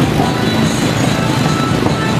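Loud, steady street-procession din: a vehicle engine running close by, mixed with music.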